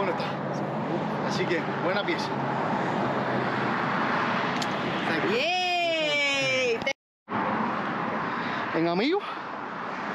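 A man's voice over steady outdoor background noise. About five and a half seconds in comes one long drawn-out vocal call, rising and then slowly falling in pitch. The sound cuts out completely for a moment at about seven seconds.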